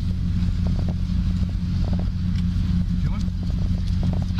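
Steady low rumble picked up by a police body camera's microphone, with faint voices in the background.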